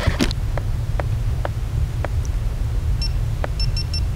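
Steady low rumble of wind on the microphone, with a few faint light clicks. A quick run of short high electronic beeps comes about three seconds in.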